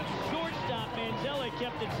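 A man's play-by-play commentary continuing over background music.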